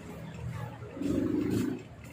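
A person's brief, low, closed-mouth 'mm' hum about a second in, over a steady low drone.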